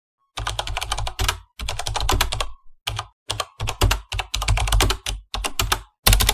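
Computer keyboard typing: rapid clicking keystrokes in runs of about a second, separated by brief pauses, starting about half a second in.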